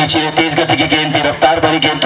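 A man's voice talking rapidly at a fairly even pitch.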